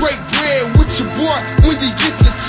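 Hip-hop track: a beat of deep kick drum hits that drop in pitch, with a male rap vocal over it.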